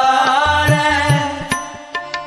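Gurbani kirtan, a Sikh devotional hymn: a singer holds one long note over steady accompaniment, with two tabla strokes in the middle.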